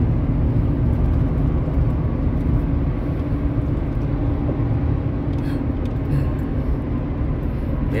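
Steady road and engine noise heard inside a vehicle's cabin while driving at highway speed: a constant low rumble with a faint steady hum.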